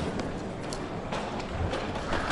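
Footsteps of a person walking on a hard floor, a few soft steps roughly half a second apart, over the steady background noise of a large hall.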